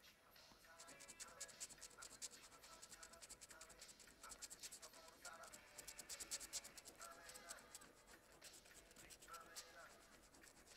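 A coin scraping the silver coating off a scratch card in quick repeated strokes, a faint fast rasp that is busiest through the middle and eases off near the end.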